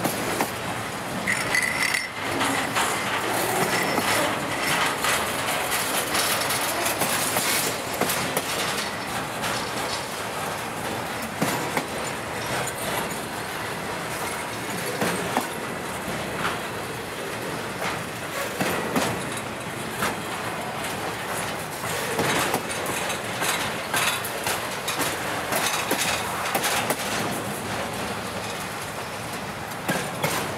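Intermodal freight cars loaded with containers and trailers rolling past on the rails: a steady rumble and wheel clatter with frequent sharp clicks, and a brief high squeal about a second in.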